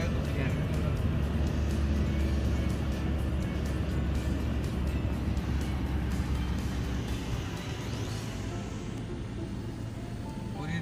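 Low, steady engine and road rumble heard from inside a moving car, easing off about seven seconds in, with music playing along.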